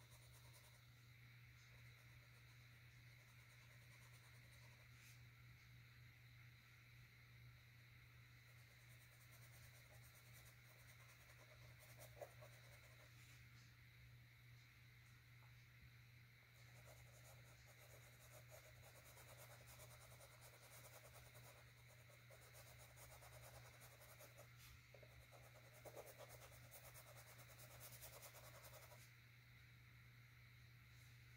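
Faint, intermittent scratching of a paintbrush scrubbing acrylic paint onto a canvas panel, over a steady low hum. The strokes are loudest a little before halfway and again near the end.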